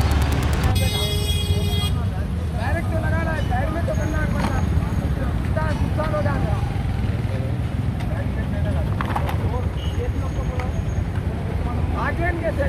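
Steady road-traffic rumble with people talking indistinctly over it. About a second in, a vehicle horn sounds once for about a second.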